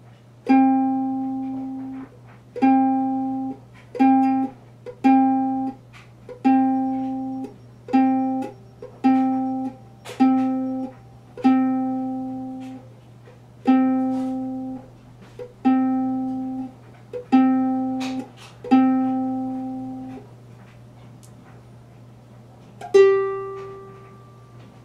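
Ukulele C string plucked over and over at the same pitch, as in tuning. Each note rings for about a second and is cut short, at uneven intervals. Near the end a single higher note sounds on the G string.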